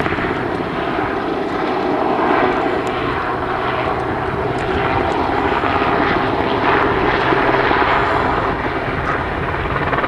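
Westland Sea King search-and-rescue helicopter in flight, its rotor and engine noise loud and steady. The rapid beat of the rotor grows plainer near the end as the helicopter turns toward the listener.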